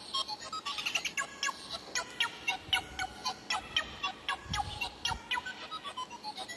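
Small birds chirping, a rapid, unbroken run of short high chirps, several a second. A couple of low bumps come about four and a half seconds in.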